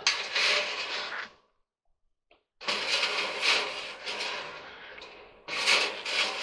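Coiled dryer heating element and its sheet-metal heater pan being handled: scraping and rattling of metal, in a short stretch at the start and a longer one after a pause of about a second, with a single small tick in the pause.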